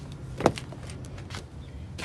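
A 2020 Chevrolet Silverado's rear door latch clicking open once, sharply, about halfway through. A few fainter ticks follow over a low steady hum.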